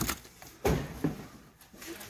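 Cardboard handling as a flat record mailer is lifted out of a cardboard shipping carton: a dull knock about two-thirds of a second in, then a lighter one about a second in.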